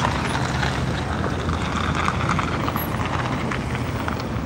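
A UAZ police SUV driving past close by, its engine running steadily under a low rumble of road noise.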